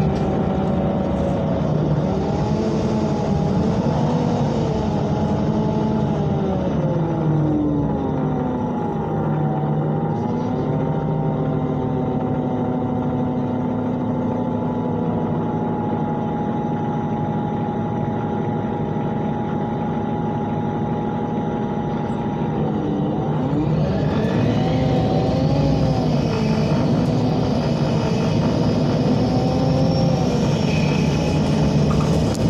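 Natural-gas engine of a MAN NL313 Lion's City CNG city bus heard from inside the cabin. Its pitch rises and falls through the first few seconds as the bus changes speed, then holds steady for a long stretch. About three quarters of the way in it dips and climbs again as the bus accelerates, with a higher whine rising alongside it.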